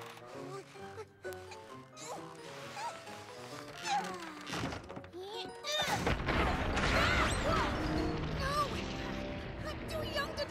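Cartoon soundtrack: background music. From about six seconds in, a louder rushing noise sets in, with children's voices yelling over it.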